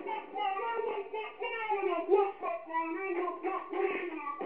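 A child singing a tune.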